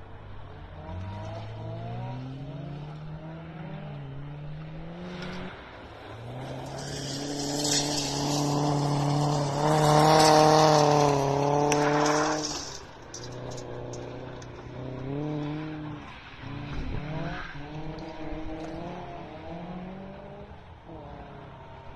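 Rally-sprint car engines rising in pitch through the gears on a gravel track. One car passes close about ten seconds in, its engine loudest then with tyre and gravel noise, and fades away soon after, while a quieter, more distant engine keeps revving up through the gears.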